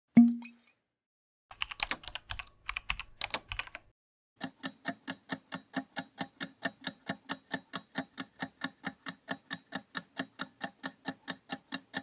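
Quiz sound effects: a short low whoosh-thump at the start, then a couple of seconds of keyboard typing clicks. After that comes a countdown timer's clock ticking, even and fast at several ticks a second, to the end.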